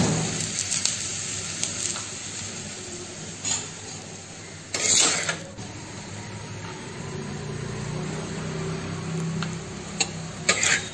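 Oil sizzling on a hot iron tawa as a paratha fries in it after being brushed with oil, with small crackles throughout and a brief louder burst of noise about five seconds in.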